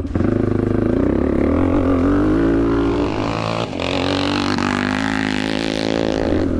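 Yamaha HL500's 500cc four-stroke single-cylinder engine pulling as the bike is ridden round a dirt track, its pitch rising and falling with the throttle. It drops briefly a little past halfway, then climbs again.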